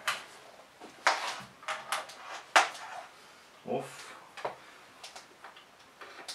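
A series of sharp clicks and knocks from test-lead plugs being pushed into the output sockets of a bench power supply and the inputs of a bench multimeter, with the leads being handled. The loudest click comes about halfway through.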